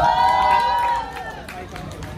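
A person's high voice holding one drawn-out call that ends about a second in, followed by open-air background noise.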